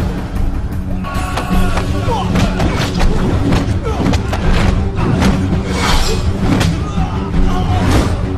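Action-film fight soundtrack: a music score under a run of sharp punch and kick impact effects landing every second or so, with fighters' shouts.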